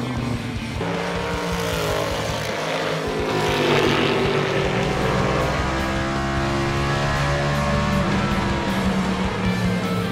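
NASCAR Next Gen race car's V8 engine running at speed on track, its pitch rising and falling as the car passes, with background music underneath.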